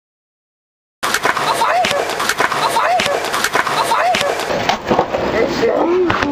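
Dead silence for about a second, then skateboard sounds start suddenly. Wheels roll on concrete, with a busy run of clacks, knocks and scrapes as boards and trucks hit and grind a concrete ledge.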